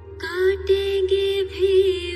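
Film song: a singer comes in about a quarter second in with wavering, ornamented held notes over a steady low drone.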